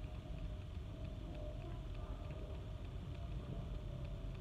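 Quiet, steady low rumble of a car's cabin background, with a faint steady hum.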